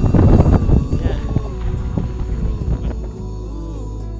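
Wind buffeting the microphone, loudest at the start and dying away, as soft ambient music fades in with a steady low drone about three seconds in.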